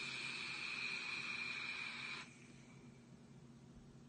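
A SMOK Mag vape mod with a Prince sub-ohm tank firing at 60 watts while air is drawn through it: a steady hiss of airflow and coil sizzle with a thin whistle. It lasts about two seconds and stops suddenly when the draw ends.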